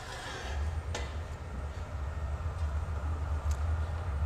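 Steady low roar of a glassblowing hot shop's gas-fired glory hole and furnace burners with the shop ventilation, setting in about half a second in. A faint click sounds about a second in.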